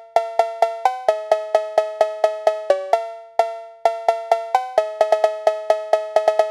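Edited-in music cue: a bouncy tune of short, struck, cowbell-like notes, about four a second, with two brief pauses in the middle and a quicker run of notes near the end. Nothing else is heard beneath it.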